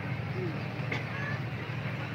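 Steady low hum and background noise of a gathered crowd, with faint distant voices, in a pause between phrases of an amplified speech.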